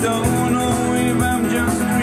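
Live band music: a guitar-backed song with a man singing.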